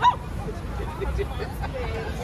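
A sudden short, loud cry from a startled passer-by right at the start, then the chatter of a crowd walking by.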